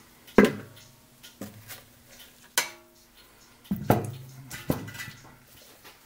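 A plastic pail being set down inside an aluminium vacuum-chamber pot and the chamber's lid fitted on: about six sharp knocks, each with a short metallic ring, the loudest about half a second in.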